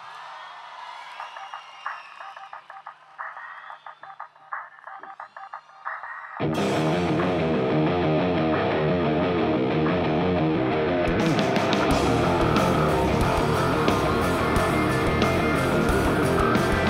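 Live rock band starting a song: about six seconds of a quieter intro of short, evenly repeated notes, then distorted electric guitars, bass and drums crash in together and play loudly, with cymbals opening up around eleven seconds in.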